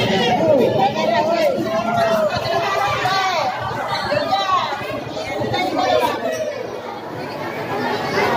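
Crowd chatter: many people talking at once, with some high-pitched voices among them.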